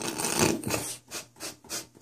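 A small dog pawing and rubbing against the phone, its fur and paws scraping close to the microphone: one long rub, then short scratching strokes about three a second.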